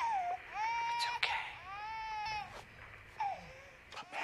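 A baby crying through a baby monitor's speaker: four wails, two of them long and held, the last short and falling, fading near the end.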